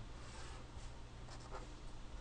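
Faint scratching of a pen drawn along a ruler's edge on paper, ruling a straight line, over a low steady hum.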